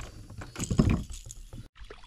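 Water sloshing and splashing around a fishing kayak in uneven bursts, cutting off abruptly near the end.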